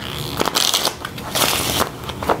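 A playing-card-sized tarot deck of thin, flexible cardstock being riffle-shuffled twice, each riffle a quick rush of card edges lasting under half a second.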